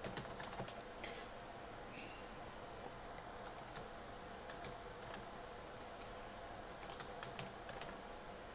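Computer keyboard typing: faint, irregular keystrokes, bunched near the start and again near the end.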